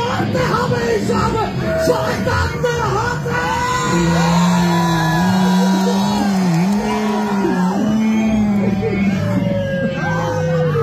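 Live rock band playing with a male singer yelling into the microphone; about four seconds in he holds one long wavering note. The crowd shouts along.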